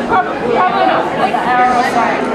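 Chatter of several people talking at once in a bar room, with no music playing.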